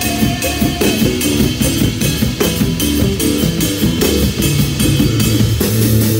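A live band plays an instrumental passage on drum kit and electric bass guitar. The drummer keeps a steady beat with cymbals and the bass plays a moving low line. A held higher melody note sounds over them and ends about a second in.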